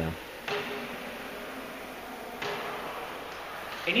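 Squash ball dropped onto the strings of a racket pinned flat to the floor under a foot, striking them twice about two seconds apart, each a sharp pock with a short ring. With the racket held still, the strings give a clean, solid contact.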